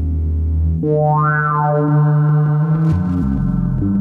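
Eurorack modular synthesizer playing a slow ambient patch: sustained, steady pitched notes with a low drone underneath. About a second in a new note enters and its tone brightens in a rising sweep, and the notes change again twice near the end.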